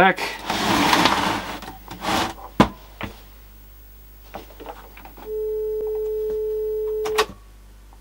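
A portable colour CRT TV is handled, giving a rustling shuffle and a couple of clicks. Then its speaker plays a steady mid-pitched test tone for about two seconds, which cuts off with a click.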